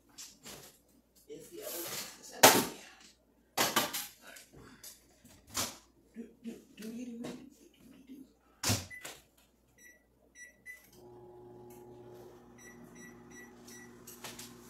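Clattering and knocks as a covered steamer dish is set into an over-the-range microwave, with the microwave door shutting with a bang about nine seconds in. Three keypad beeps follow, then the microwave starts running with a steady hum, and four more beeps come from the range's oven controls as the oven is set to 450.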